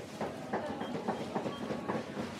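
Busy market aisle ambience: a quick, rhythmic clicking or clacking, about three or four a second, over a steady background hubbub, with a few faint brief high tones in the middle.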